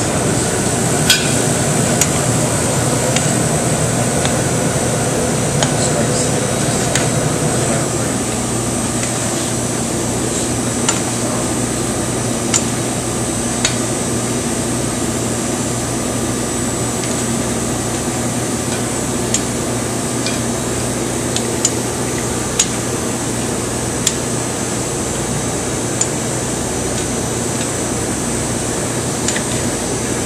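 Steady hum of commercial kitchen ventilation, with occasional sharp metallic clicks of steel tongs against a sauté pan and plate as pasta and seafood are plated.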